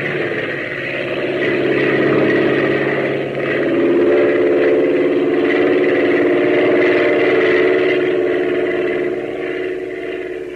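Propeller airplane engine sound effect running steadily on an old radio transcription recording, with a change in its tone about three and a half seconds in.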